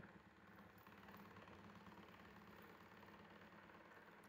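Near silence: faint steady room tone from the recording.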